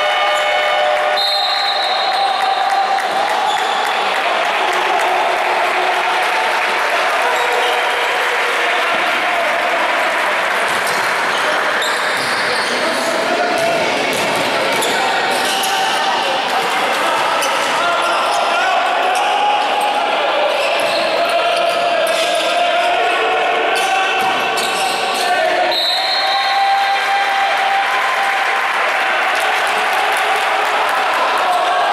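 Basketball game in play: the ball bouncing on the court, with players' shouts and calls echoing around a sports hall.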